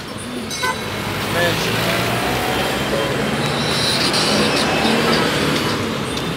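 Busy city street traffic: engines of minibuses, cars and a small truck passing close by, swelling as a vehicle goes past, with people's voices in the street mixed in.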